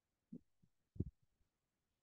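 A few soft, low thumps over near silence, the loudest about a second in.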